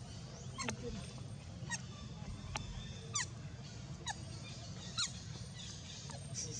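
A run of short, high animal calls, each falling steeply in pitch, repeated about once a second, over a steady low background hum.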